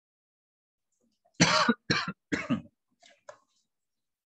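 A person coughing three times in quick succession, loud and short.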